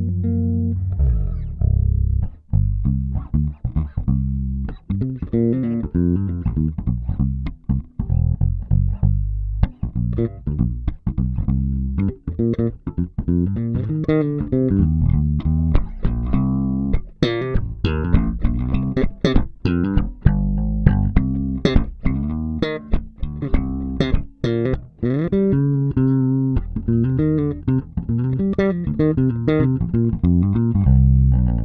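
Solo electric bass playing a busy line of plucked notes: a Kiesel LB76 through an Aguilar Tone Hammer 500 head with its EQ set flat, recorded direct from the head rather than through a cabinet. Many notes have sharp, bright attacks, more so in the second half.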